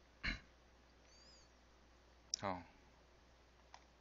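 Quiet room tone with a sharp computer-mouse click just after the start and a fainter click near the end; a man says a short 'oh' about halfway through.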